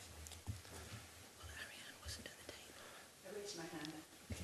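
Quiet room with faint murmured voices, small knocks and rustling; a low voice speaks softly for under a second near the end.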